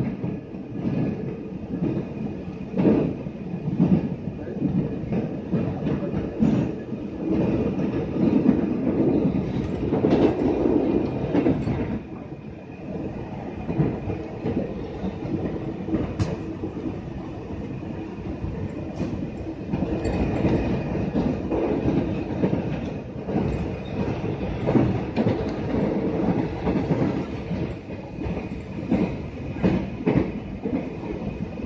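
Electric commuter train (KRL) running along the line, heard from inside the carriage: a steady rumble of wheels on rail with scattered clicks over rail joints. It goes a little quieter from about twelve seconds in, then picks up again.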